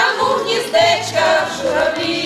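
Women's folk choir singing a Ukrainian song together, sustained notes in harmony.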